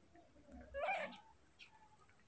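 A single short, soft call from a baby macaque, about a second in.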